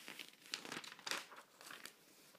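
Pages of a glossy paper catalogue rustling as a page is turned: a few soft, short crinkles of paper.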